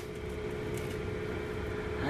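Steady mechanical hum holding one tone, with faint light rustles of ham slices being laid onto a foil-lined pan.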